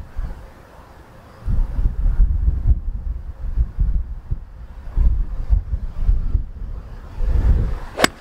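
Strong, gusting wind buffeting the microphone: a low rumble that comes in about one and a half seconds in and rises and falls in gusts. At the very end comes a sharp crack of an iron striking a golf ball cleanly.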